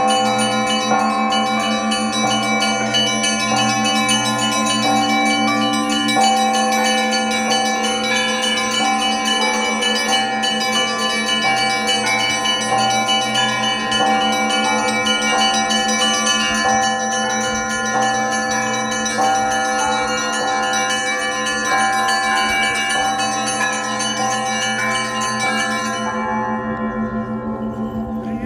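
Church bells ringing in a continuous peal for an Orthodox procession: many overlapping strikes over a steady low hum. The brighter ringing thins out near the end.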